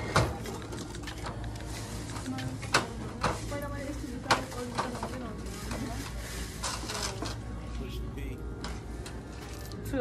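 Checkout counter sounds: a few sharp clicks and knocks as items are handled at a cash register, over indistinct background voices and a low store hum.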